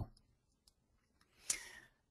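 Near silence, then a single short click about one and a half seconds in, trailing off in a brief hiss.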